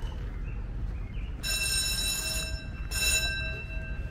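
Carousel's electric bell ringing in two bursts, the first about a second and a half in and lasting about a second, the second shorter, its tone lingering faintly after each.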